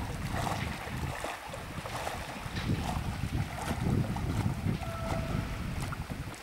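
Wind buffeting the microphone in an uneven low rumble, over the splashing of a person swimming in choppy water.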